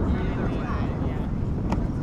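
Wind rumbling on the microphone of an outdoor field, with faint distant voices and one faint tap near the end.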